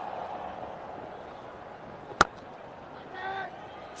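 Cricket bat striking the ball once about two seconds in: a single sharp crack over steady ground noise.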